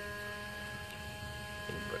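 A windshield-washer pump, pressed into service as a cheap water-methanol injection pump, runs with a steady pitched electric hum during a test spray through a mist nozzle.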